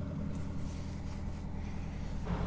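Narrowboat's diesel engine idling steadily, a low even hum.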